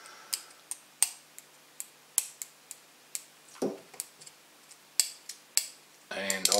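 Small steel screwdriver tip clicking against the toothed steel rotor of a large stepper motor, snapping onto the teeth under the pull of the rotor's strong permanent magnet. About a dozen sharp, irregular metal clicks.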